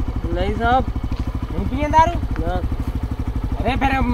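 A stationary TVS commuter motorcycle's single-cylinder engine idling, a steady fast low putter that runs evenly beneath voices.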